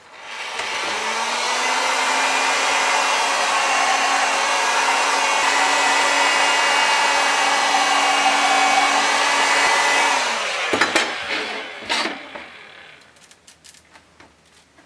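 Draper electric hot air gun heating a seam of a 3D-printed plastic plate: a steady rush of blown air over a low motor hum that rises as it spins up about half a second in and falls away as it is switched off about ten seconds in. A few knocks follow.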